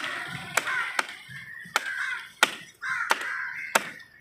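A heavy cleaver chopping trevally into chunks on a wooden block: about six sharp chops, roughly two-thirds of a second apart. Crows are cawing between the chops.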